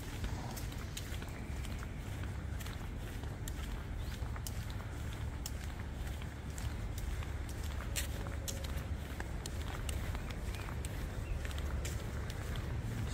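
Footsteps walking across a tiled pool deck, heard as scattered light clicks over a steady low rumble.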